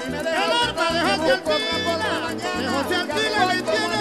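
Live Venezuelan llanera (joropo) music played on harp with a repeating plucked bass line, an instrumental passage with no singing.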